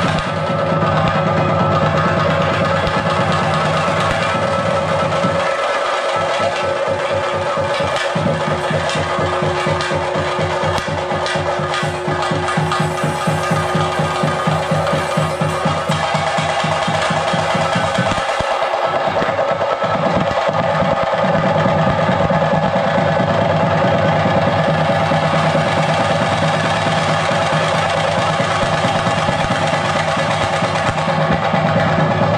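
Chenda drums of a Kerala theyyam ensemble played in fast, continuous stick strokes, with steady held tones beneath. The drumming is densest from about five seconds in to about twenty seconds in.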